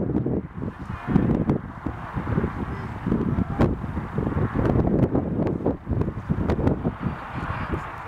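Wind buffeting the microphone in an uneven low rumble, with shouting voices and a few sharp clicks, most of them after the middle.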